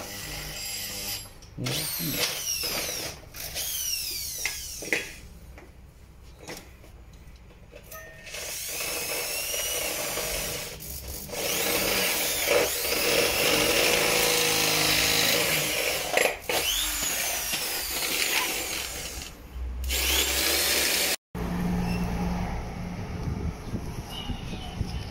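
Plastic cable ties being zipped tight around a brake hose, a rasping ratchet that comes and goes in short stretches, with handling noise.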